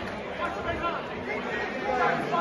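Crowd chatter: many spectators talking over each other at once, with no single voice standing out.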